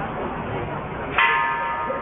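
A bell struck once a little over a second in, ringing with several clear high tones that fade within about a second, over crowd chatter.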